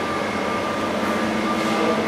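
Steady mechanical hum and whir of an overhead crane hoist running as it lifts a trommel on chains, with a faint steady tone in it.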